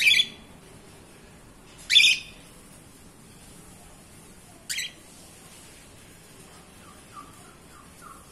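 Pet cockatiels giving three short, shrill calls: one at the start, one about two seconds in, and a shorter, quieter one a little before five seconds. A few faint soft notes follow near the end.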